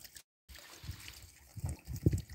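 Faint steady trickle of water at a koi pond, with a brief dropout in the sound just after the start and a soft low bump near the end.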